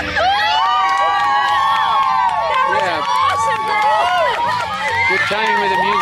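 A group of voices yelling together in long, drawn-out overlapping calls that rise and fall in pitch, without words.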